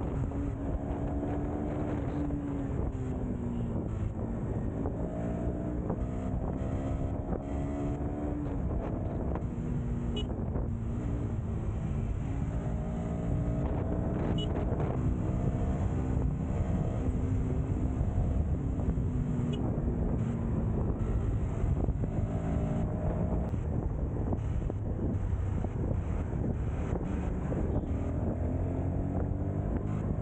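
Motorcycle engine heard from the rider's seat while riding in traffic. Its pitch drops and then rises again several times as the bike slows and speeds up, over steady road and wind noise on the microphone.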